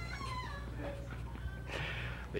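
Faint chuckling from the congregation dying away in the first moment, then a low steady electrical hum.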